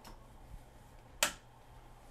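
A single sharp click of a light switch being flipped off, preceded by a faint tick.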